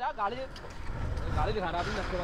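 Men's voices talking at a distance over a low steady rumble.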